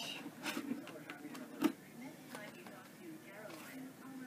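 Light clicks and taps of a wire-bound paper book being handled, its cover and metal rings knocking. The loudest click comes a bit over a second and a half in.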